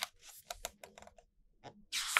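Fingers handling the pages of an album photobook: a string of small, sharp paper clicks and light rustles as a page is lifted to turn.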